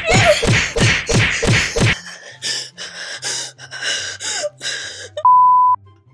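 A young woman's mock meltdown: loud, harsh screaming bursts about three a second, then rougher breathy cries and gasps. Near the end a steady censor bleep, the loudest sound, lasts about half a second.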